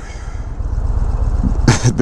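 Harley-Davidson Milwaukee-Eight 117 V-twin idling with a steady low-pitched sound, slowly getting louder. A short laugh comes in near the end.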